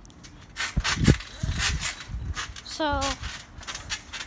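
Handling noise from the phone that is filming: a run of knocks, rubs and dull thumps on its microphone as it is picked up and repositioned, lasting about two seconds.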